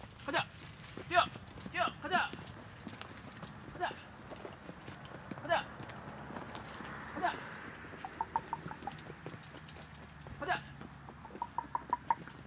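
A man's short, sharp wordless calls, repeated every second or two, urging a pony on a lead rope. About two-thirds of the way in and again near the end there are quick runs of light clicks.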